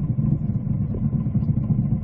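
A boat's engine running steadily at slow trolling speed, a constant low rumble.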